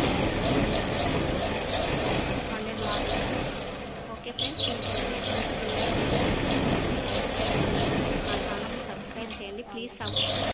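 Sewing machine belt-driven by a small electric motor, running steadily with a motor hum as cloth is stitched through it; it pauses briefly about four seconds in, then runs on.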